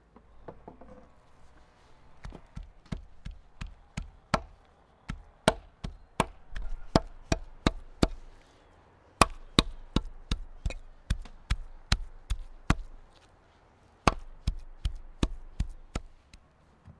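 Steel meat cleaver chopping raw meat on a wooden chopping board: sharp knocks about two or three a second, in three runs with two short breaks.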